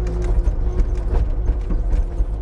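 Bobcat T320 compact track loader's diesel engine running steadily, with irregular clanks and knocks as the operator shakes the raised bucket back and forth on the joystick. The rattle is slop in the quick coupler between the coupler and the bucket.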